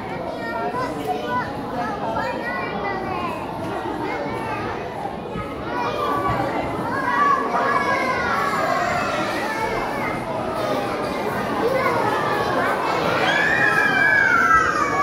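A hall full of children chattering and calling out, many voices overlapping, growing somewhat louder in the second half.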